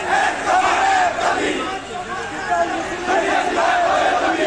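A crowd of marchers shouting protest slogans together, many voices overlapping.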